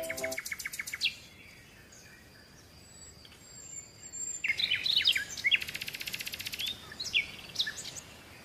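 Birds chirping: short rising and falling chirps and a fast trill, starting about halfway through after a quiet stretch. A brief buzzy sound fades out in the first second.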